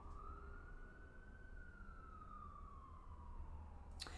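Faint emergency vehicle siren wailing: one slow rise in pitch over the first second or so, then a long, gradual fall.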